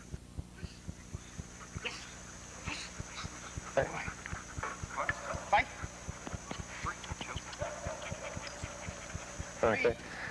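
A dog whining in a few short, rising calls around the middle, over a steady fast ticking and faint background voices.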